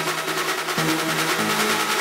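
Dark techno from a DJ mix in a passage without the kick drum: held synth notes and a fast, shimmering high texture, with no deep bass.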